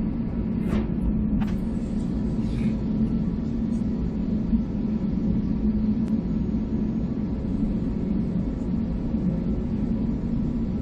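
Steady low rumble and hum of an airliner's jet engines at idle, heard inside the cabin as the aircraft taxis slowly.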